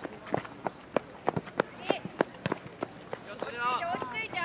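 Outdoor youth soccer match: a run of sharp knocks, about three a second and irregular, with short shouts from players or spectators near the end.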